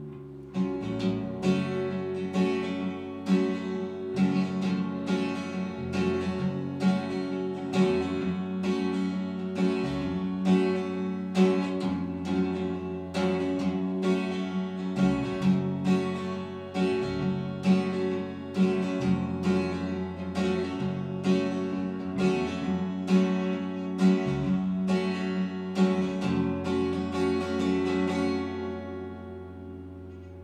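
Acoustic guitar strummed in a steady rhythm over an electric bass line, an instrumental passage of a live song. It dies away near the end as the song finishes.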